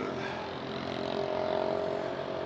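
A steady engine drone in the background, a hum of several steady tones that swells slightly partway through.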